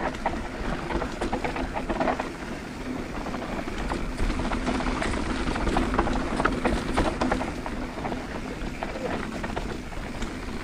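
Mountain bike rolling down a dirt singletrack: steady tyre noise on dirt with frequent clatter and knocks from the frame, chain and components over bumps.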